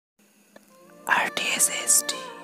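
Logo intro sting: a whispered voice over a held synth chord, the whisper starting about a second in with sharp, hissy s-sounds.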